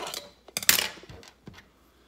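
Hard plastic parts of a small drip coffee maker and a piece of plastic chopstick being handled: a click, then a short scraping rattle about half a second in, the loudest sound, and a couple of light taps after it.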